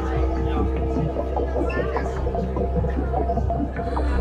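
A steady low hum with several sustained tones above it, and faint voices now and then.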